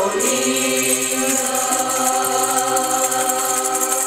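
A group of young women's voices singing a Romanian colindă (Christmas carol) together, holding long steady notes.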